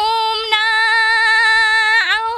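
A woman singing a Nepali dohori folk song, holding one long high note steady with a slight vibrato.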